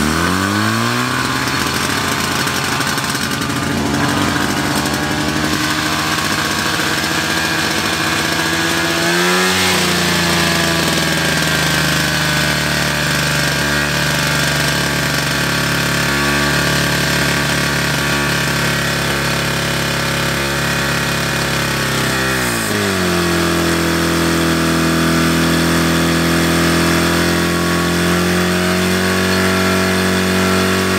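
Portable fire pump engine running hard right after being started, its revs climbing in the first second. The pitch steps up again about nine seconds in and falls back to a lower steady run about twenty-three seconds in.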